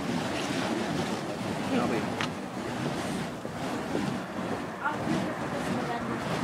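Burning monkey-fist fire poi whooshing as they are swung around on their chains, a continuous rushing noise that swells and fades slightly.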